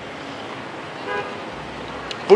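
A vehicle horn gives one short toot about a second in, over a low hum of street traffic.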